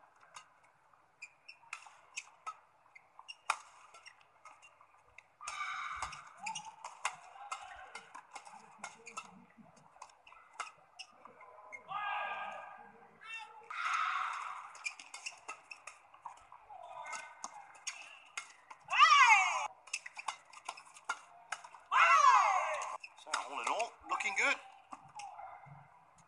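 Badminton match sound heard through a TV broadcast with a thin, tinny tone and no low end: sharp clicks of rackets hitting the shuttlecock during rallies, brief gliding squeaks, and short swells of crowd cheering and applause between points.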